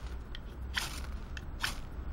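A ferro rod scraped twice with the spine of a Böker Bushcraft Plus knife, two short, sharp rasping strokes throwing sparks. The spine has been reground to a square 90° edge, and it now strikes sparks without pressing hard.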